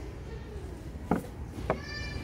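Two short clicks of a cardboard-and-plastic toy box being handled and turned over, over a low steady store background hum. A brief high-pitched tone starts near the end.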